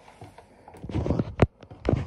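Handling noise from a hand gripping and moving the recording phone: a few sharp knocks and bumps with rubbing between them, the loudest about one and a half seconds in.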